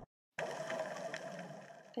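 A moment of dead silence at an edit cut, then steady underwater ambience from the dive footage: a continuous hum-like noise with a faint ticking in it.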